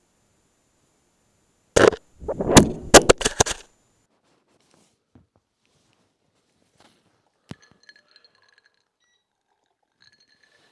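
A small camera falling off a banister rail and clattering: one sharp knock, then a quick run of loud knocks and rattles lasting under two seconds. A single faint click follows a few seconds later.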